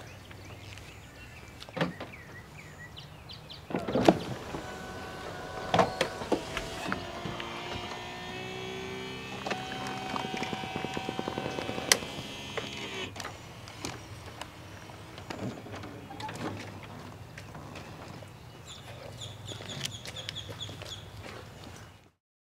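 Electric soft top of a 996 Porsche 911 Cabriolet folding down: several clicks and knocks from the latches and cover, then an electric motor whining steadily for about six seconds, ending in a sharp click.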